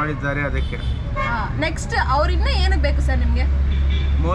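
Speech over a steady low rumble of road traffic that sets in about half a second in.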